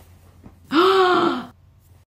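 A woman's loud gasp of shock, voiced and breathy, lasting under a second, about two-thirds of a second in.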